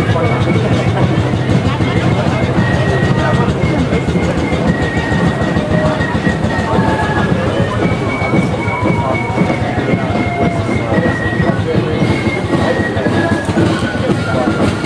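Street ambience of a parade: a steady low rumble with crowd chatter, and a faint high-pitched tune of held notes stepping up and down over it.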